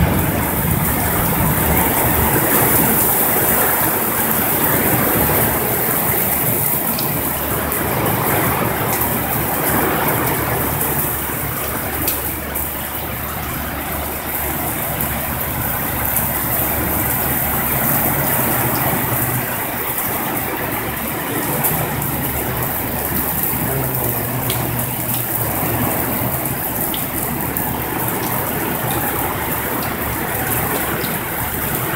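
Heavy rain downpour falling on a paved road and a roof: a loud, steady hiss of rain, with a faint low hum that comes and goes every several seconds.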